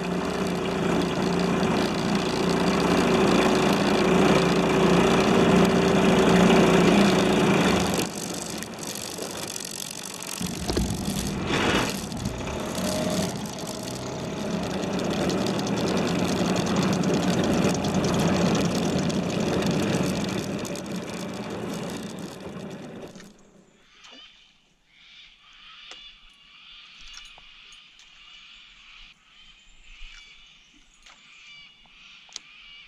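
Small Parsun 5.8 hp tiller-steer outboard motor running under way, with water rushing past the hull; the sound swells and fades as the boat passes. It drops away suddenly about 23 seconds in, leaving only faint background sound.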